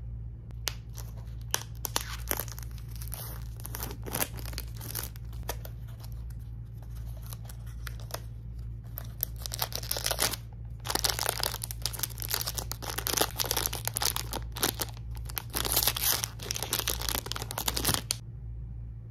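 Thin cardboard blind box being opened by hand, then its foil wrapper crinkling and tearing. The crackle is sparse at first and turns dense and louder about two-thirds of the way through.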